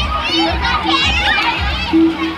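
A group of children shouting and squealing as they play in pool water, over background music with a steady beat.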